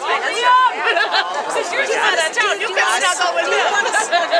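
Many people talking and calling out at once: overlapping voices with no single clear speaker.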